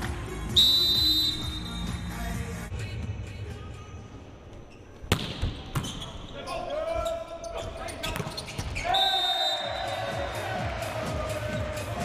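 A volleyball being struck over indoor arena noise: a sharp loud hit about five seconds in, followed by further ball contacts during the rally. Shrill high sustained tones sound twice, briefly near the start and again from about nine seconds in.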